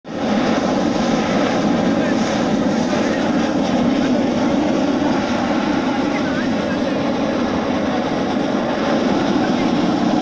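Hot air balloon propane burner firing in one long, steady blast, a continuous loud rushing noise.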